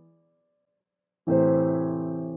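Electronic keyboard playing in a piano voice: the previous chord fades out, there is a second of silence, then a new chord, A minor (A, C, E with a high C), is struck about a second and a quarter in and rings on.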